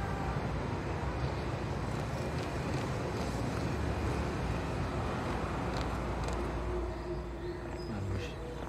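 Steady city traffic ambience: a low rumble with hiss from passing road traffic, with a faint steady tone near the end.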